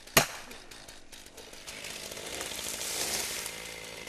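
A chainsaw running and cutting through a tree trunk, growing louder towards the middle, with a sharp knock just after the start.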